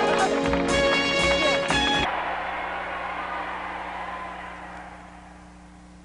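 End-credits theme music with regular percussion hits stops about two seconds in. Its last chord rings on and fades away over a few seconds, leaving a faint hiss.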